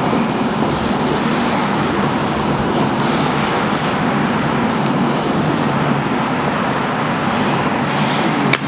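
A loud, steady rushing noise with no distinct clicks or knocks in it.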